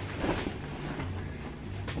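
Bed sheet rustling as it is unfolded and shaken out, over a low steady hum.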